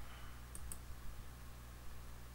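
Two quick computer clicks close together, a little over half a second in, over a low steady hum.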